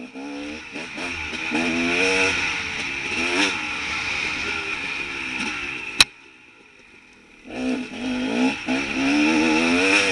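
Enduro dirt bike engine revving up and down as it is ridden along a rough forest trail. About six seconds in there is a sharp click, the sound drops away for over a second, and then the revving picks up again.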